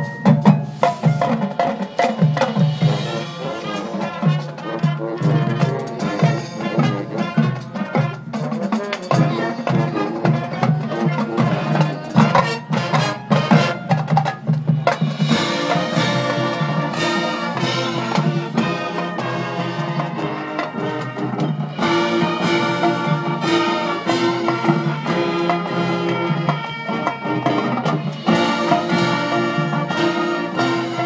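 High school marching band playing a field show: drumline and front-ensemble percussion with brass. The first half is led by rapid percussion strokes, and about halfway through the band moves into held chords over the drums.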